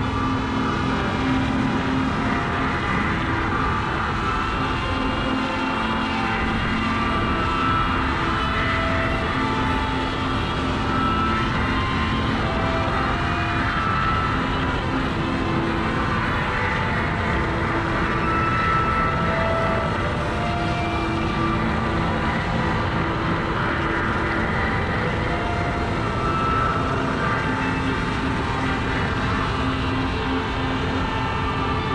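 Small quadcopter's propellers and motors whirring close overhead, heard from a GoPro hanging beneath it, a steady rushing hum with tones that keep shifting in pitch as the motors adjust. The drone is working hard under the weight of the hanging camera.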